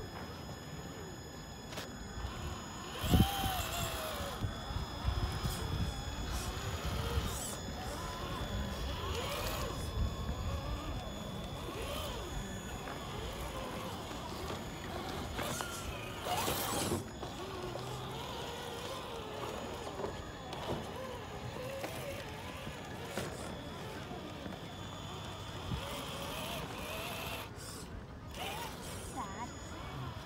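Traxxas TRX-4 RC crawler's electric motor and geared drivetrain running as it crawls over rocks, with a sharp knock about three seconds in. Indistinct voices in the background.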